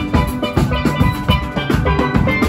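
Steel band playing: several steel pans struck in quick, rhythmic ringing notes over a drum kit.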